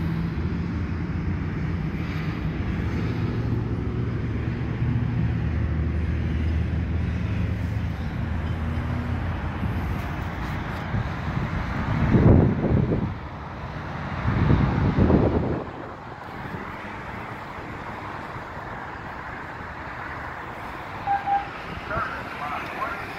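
A car engine idling steadily, fading out after about nine seconds. Two loud low rumbles, each about a second long, follow a few seconds later.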